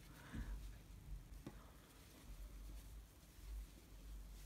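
Near silence: room tone with a low hum and a few faint, soft rustles of hands handling a crocheted yarn hat.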